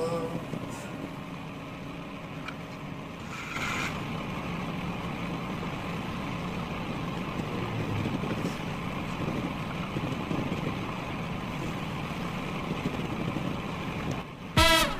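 Steady low outdoor background rumble on an open building site, with a brief louder rush about three and a half seconds in.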